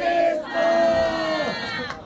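Crowd of voices shouting together in long held calls as the backing track stops: a short call, then a longer one that drops off about a second and a half in.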